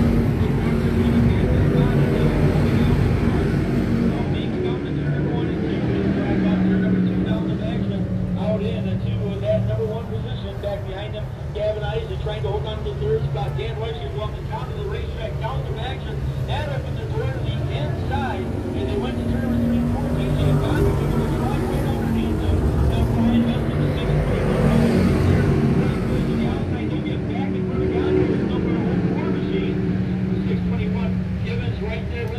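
A field of sportsman modified dirt-track race cars running laps at racing speed, their V8 engines droning steadily and swelling a little as cars go by. Indistinct voices carry over the engines.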